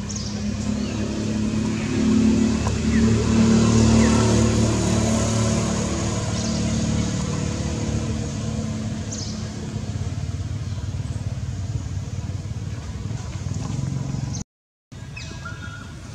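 A motor vehicle's engine passing close by, growing louder for the first few seconds and then slowly fading. The sound cuts out briefly near the end.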